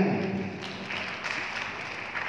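Audience applauding as a sung Sundanese pupuh ends, the singer's last note falling away at the very start.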